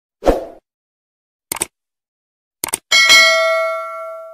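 Subscribe-button animation sound effect: a short thump, two separate clicks, then a click followed by a notification-bell ding that rings on and fades away.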